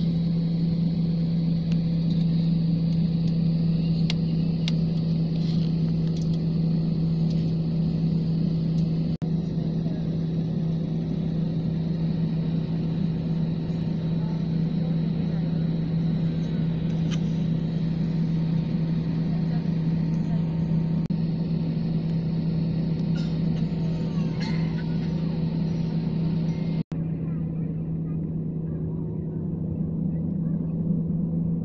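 Airliner cabin noise while taxiing: a steady, loud low engine hum with a hiss of air over it. The sound cuts out for an instant twice, about nine seconds in and near the end.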